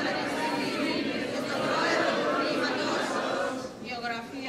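A large group of graduates reciting the graduation oath in unison, many voices merging into one steady blur of speech.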